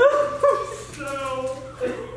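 A man's voice imitating a dog: high whimpering whines and yips. Two short ones come close together at the start, then a longer whine follows about a second in.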